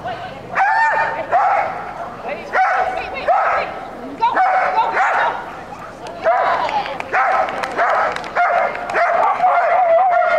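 A dog barking over and over, short high-pitched barks coming about every half second to a second.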